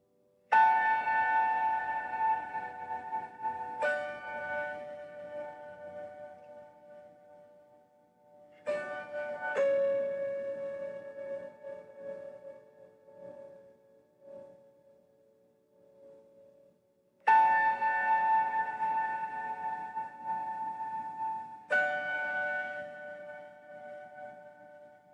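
Bell-like chime tones, struck about six times at irregular intervals and at several different pitches. Each rings out and fades slowly over a few seconds, with the soft, spacious feel of ambient meditation music.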